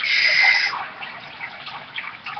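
A person blowing out a breath hard through pursed lips: a short hiss lasting under a second, a stunned exhale. After it, only faint rustles.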